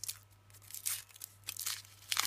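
Foil wrapper being peeled and crinkled off a Kinder Surprise chocolate egg, in several short rustling bursts.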